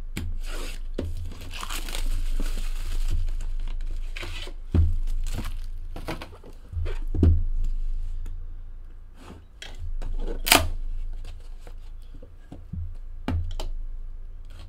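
Clear plastic wrap being torn and crinkled off sealed trading-card boxes, with scattered handling clicks and knocks and one sharp snap about ten and a half seconds in. A steady low electrical hum runs underneath.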